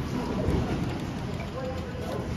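Low rumbling noise from a handheld phone being jostled against its microphone while filming.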